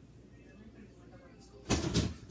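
Quiet room tone, then near the end a short, loud rustling clatter as things are taken out of an open refrigerator.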